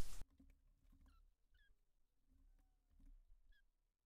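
Paint cups and bottles being handled: a short loud knock at the very start, then faint taps. Three short high chirps come about a second, a second and a half, and three and a half seconds in.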